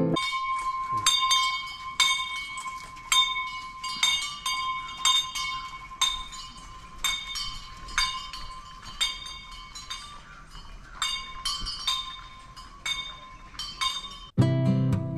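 A small metal bell clinking about once a second, each strike leaving a short ring, in the uneven rhythm of a bell swinging on a walking elephant.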